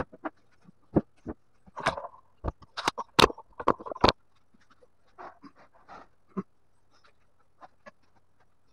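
Plywood panels being handled and set in place: a quick run of wooden knocks, clatters and short squeaks in the first four seconds, then softer scuffs and an odd knock.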